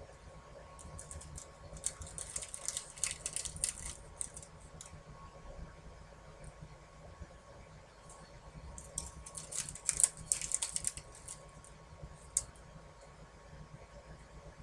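Light clicking and rattling of small craft supplies handled on a tabletop, in two bursts of quick clicks, about two seconds in and again from about nine to eleven seconds in, with a single click a little after.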